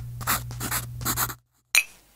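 Pen-on-paper scribbling sound effect: quick scratchy strokes, about four a second, over a low steady hum, cutting off suddenly. Near the end comes a brief, sharp, bright ringing hit.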